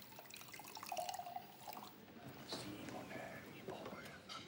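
Faint, indistinct voices with scattered light clicks. The loudest moment comes about a second in.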